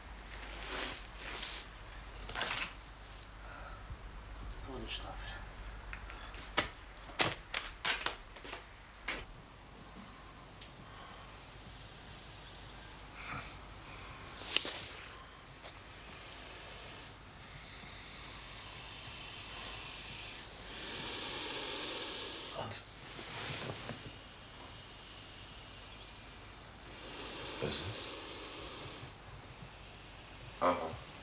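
A steady high cricket trill that stops about nine seconds in, with a quick run of sharp clicks just before it ends. After it come several soft hissing sounds, the longest a little past the middle.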